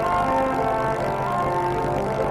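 Background music of slow, sustained chords.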